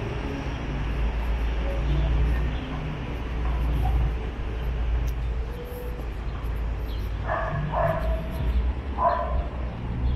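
City street ambience: a steady low rumble with faint background noise. Near the end come three short, sharp calls, two close together and one a second later.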